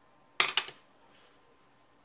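A clear plastic ruler being set down on a sheet of paper on a hard table: a short clatter of several sharp knocks lasting about half a second.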